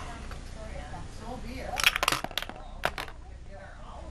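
A spent flash bulb ejected from a flash gun: a quick cluster of sharp metallic clicks and clinks about two seconds in, then one more click shortly after.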